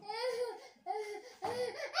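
High-pitched laughter in three short bursts, with a bright, wavering pitch.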